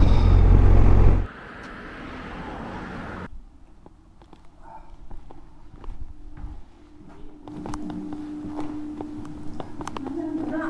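Riding noise from a BMW R1250 GS motorcycle on the move, its boxer-twin engine and wind, for about a second before cutting off abruptly. Quieter indoor sound follows, with scattered light footsteps and clicks, and a steady low hum over the last few seconds.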